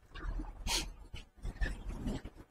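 A walking man's breathing and footsteps, with one loud, short hiss of breath a little under a second in.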